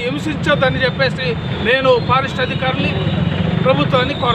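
A man speaking continuously, over a steady low rumble of background noise.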